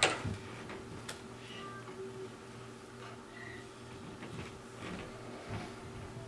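A single sharp smack right at the start, then a quiet room with a steady low electrical hum and a few faint ticks and knocks.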